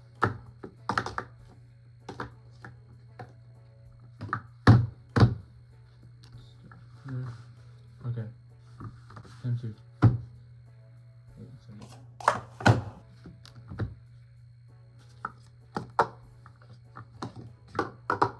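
Speed Stacks plastic sport-stacking cups clacking against each other and knocking down on the stacking mat in quick, irregular runs of sharp knocks as the pyramids are built and collapsed at speed, over a steady low hum.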